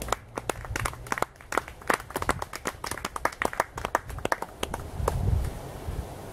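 A small audience applauding: many scattered, irregular hand claps that die away after about four and a half seconds.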